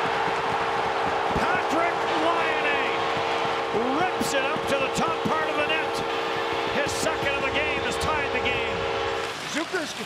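Arena goal horn blaring with a steady chord of tones over a loud cheering home crowd, celebrating a goal just scored. The horn cuts off about nine seconds in while the crowd noise carries on.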